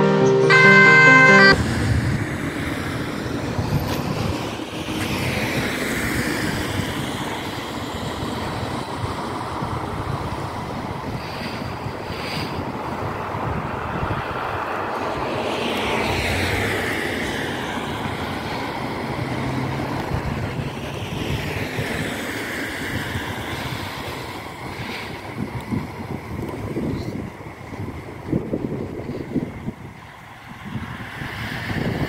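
Brief music ends about a second and a half in. Then road traffic and wind noise on the microphone, with a faint emergency-vehicle siren wailing up and down at intervals.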